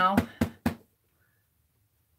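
Two light knocks close together in the first second: a hand-carved rubber stamp tapped onto an ink pad to ink it.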